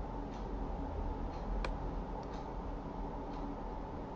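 Faint regular ticking, about once a second, over a steady low background hum, with one sharper click about one and a half seconds in.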